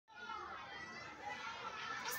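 Faint voices of young children talking.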